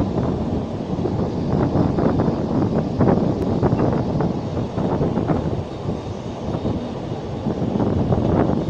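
Narrow-gauge steam train running along the track, heard from a passenger coach: a steady rumble of wheels on rail with irregular clatter, and wind buffeting the microphone.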